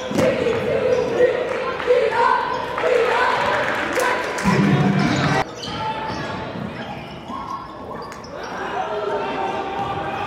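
A basketball being dribbled on a gym floor, with crowd and bench voices in the gym. The sound drops suddenly about five and a half seconds in, where the footage is cut.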